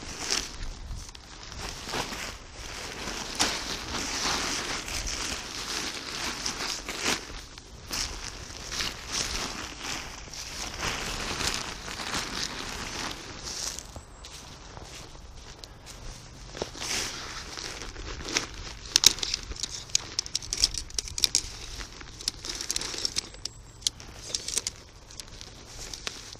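Quechua Quick Hiker Ultralight 2 tent's polyester flysheet rustling and crinkling as it is pulled out of its bag and spread on the ground, with sharper clicks and knocks around two-thirds of the way through.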